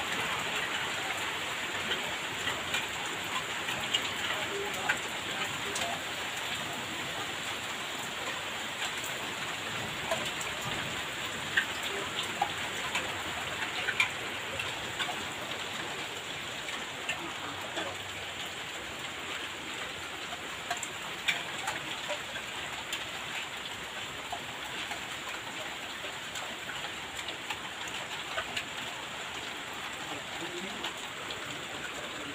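Heavy rain falling steadily on a wet concrete yard and fencing, a continuous hiss dotted with sharp splats of drops striking nearby.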